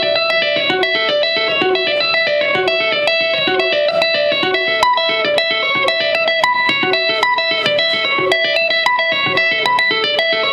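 Ibanez AS-100 semi-hollow electric guitar played with overhand two-handed tapping through a Peavey Studio Pro amp: a rapid, repeating run of ringing notes with crisp attacks.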